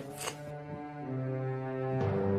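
Background film score: low, held notes sounding together, moving to a new chord about a second in.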